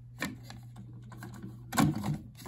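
Clicks and knocks of a stack of 45 rpm vinyl singles being handled and dropped onto the spindle of a BSR record changer: a light click about a fifth of a second in and a louder clatter near the end. A steady low hum runs underneath.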